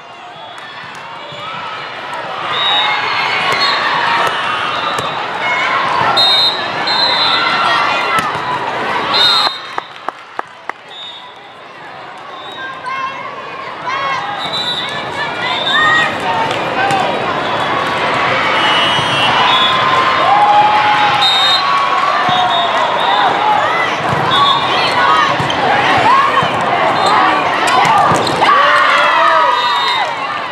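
Busy indoor volleyball hall: many overlapping voices of players and spectators calling and chattering, over scattered thuds of volleyballs being hit and bounced and short high squeaks. It thins out briefly about ten seconds in, then grows louder and busier.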